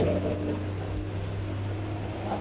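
Steady low mechanical hum, with no other sound standing out.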